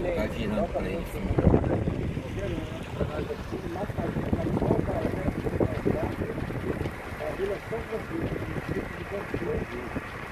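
Wind rumbling steadily on a microphone held out of a car window, with faint voices underneath.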